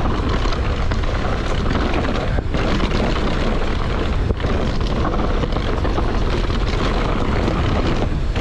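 Wind rushing over the camera microphone at speed, over the rumble of knobby tyres on dirt and roots and a steady rattle from the full-suspension mountain bike as it runs fast downhill.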